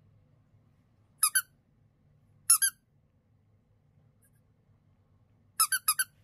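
High-pitched squeaks in quick pairs: two about a second in, two more a second later, then a run of four near the end.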